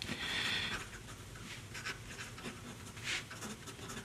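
A Sailor 14-carat gold music (MS) fountain pen nib writing letters on paper: a faint, soft scratching of the nib gliding in short strokes, loudest in the first second. This is a smooth, fluid nib, more polished than its slightly scratchy steel twin.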